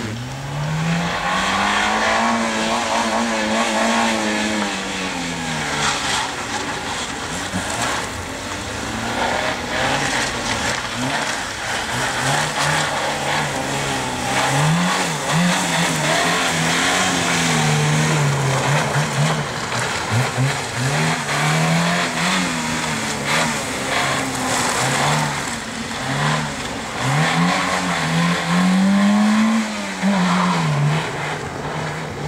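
Suzuki hatchback slalom car's engine revving hard and dropping off again and again as the car accelerates and brakes through tight tyre-stack gates, with short sharp rev bursts through the middle and longer pulls near the start and end.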